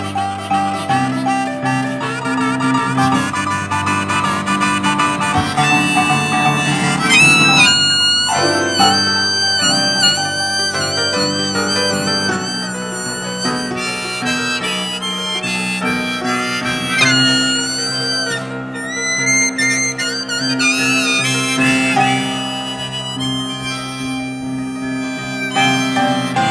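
Harmonica solo played from a neck rack over upright piano blues accompaniment, the harmonica notes bending and wavering in pitch above steady piano chords.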